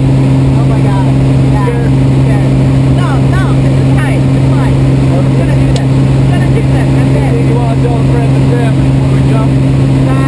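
Small propeller plane's engine and propeller droning loudly and steadily, heard from inside the cabin, with a constant low hum.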